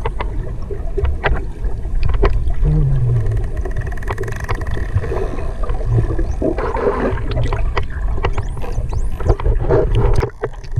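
Underwater sound picked up on a diver's camera: a steady low rumble with many sharp clicks and crackles throughout, and a brief falling tone about three seconds in.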